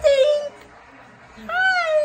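A woman's voice: a short word at the start, then about one and a half seconds in a long, high, sing-song call that rises and falls in pitch, like a drawn-out greeting.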